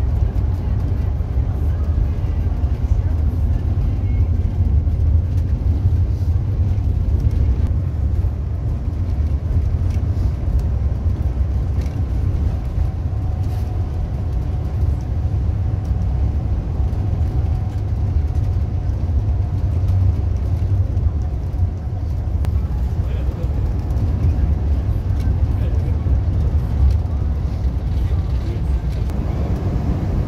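Neoplan Tourliner coach cruising on the highway, heard inside the cabin: a steady low rumble of the diesel engine and tyres on the road.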